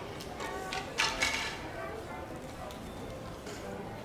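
Indistinct chatter of many children's voices in a large hall, with a brief louder noise about a second in.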